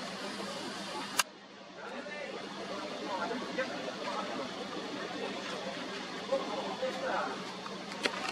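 Faint, distant voices over a low outdoor background hum, with a single sharp click about a second in.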